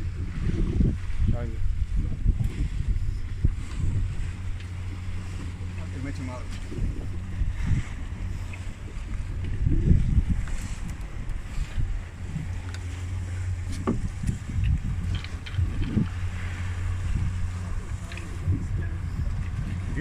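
Boat engine idling with a steady low hum, overlaid by irregular low rumbles and thumps of wind and handling on the microphone, the strongest about ten seconds in.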